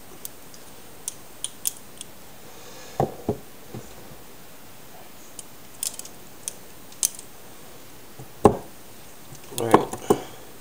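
Scattered sharp metal clicks and clacks of stainless-steel-handled Benchmade balisong knives being handled and opened, with a few heavier knocks as they are set down on a wooden table; the loudest knock comes a little after the middle, and a cluster of knocks comes near the end.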